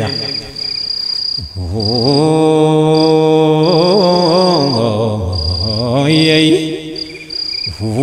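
A man's low voice chanting a menzuma, an Ethiopian Islamic devotional chant, in long held, wavering notes that slide down low and climb back up, with a brief break about a second and a half in and another near the end. A thin, high steady tone sounds on and off behind the voice.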